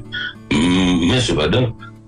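A voice holding one long drawn-out vowel sound for about a second, over background music.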